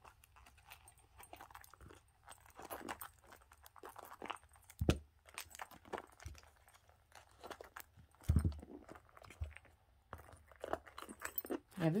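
Small zippered pouches and a handbag being handled: soft rustles and clicks with a few light knocks, the loudest about five seconds in and again just after eight seconds.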